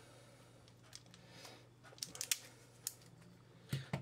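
Crimping pliers squeezing an insulated ferrule onto the end of a stranded wire: a few light clicks from the tool, several close together midway.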